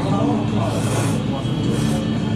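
A person slurping thick ramen noodles, two short slurps about a second apart.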